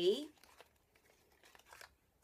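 Faint crinkling of cosmetics packaging being handled: a few soft rustles and small ticks, most of them near the end.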